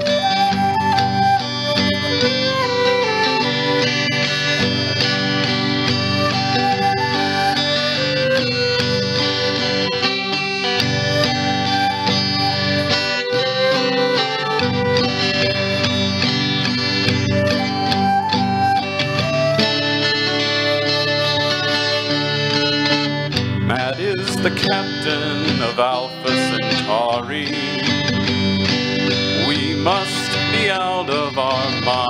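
Live instrumental introduction: a flute plays the melody over a strummed acoustic guitar, starting abruptly at the beginning. In the last several seconds a man's voice joins in.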